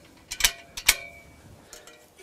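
A few sharp metallic clicks and clinks from the aluminium scaffold tubes and their locking pin being handled. The loudest comes about a second in and rings briefly.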